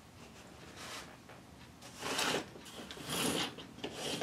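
Short rubbing and scraping noises of thin wooden planking strips being handled against the workbench, four brief swishes, the loudest about two and three seconds in.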